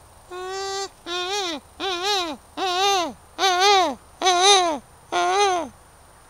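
A voice calling seven times in a row, each call a drawn-out note that rises and then falls in pitch, the calls growing louder.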